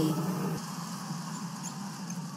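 Basketball arena crowd murmur during live play, with a few faint, short high squeaks of sneakers on the hardwood court near the end.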